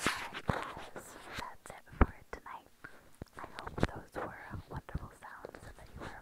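Close-miked mouth sounds of teeth nibbling on a small microphone: scattered short clicks and breathy, whisper-like noises, with one sharp click about two seconds in.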